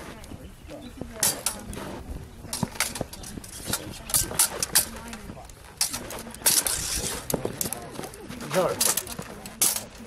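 Steel rapier blades clashing in an irregular series of sharp metallic strikes as two fencers exchange blows. A voice calls out near the end.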